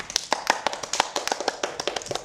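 A few people clapping by hand, the claps irregular and overlapping at several per second.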